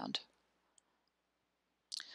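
Near silence between spoken phrases, with one faint short click about a second in.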